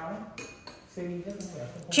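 A few light clinks of chopsticks against ceramic bowls.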